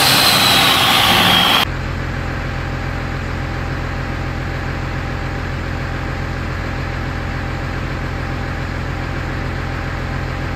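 12-valve Cummins diesel running on a hub dyno: a loud stretch with a high turbo whistle falling in pitch cuts off abruptly about a second and a half in. It gives way to the engine's steady, unchanging drone under load, held at about 2150 rpm for a steady-state exhaust-temperature test.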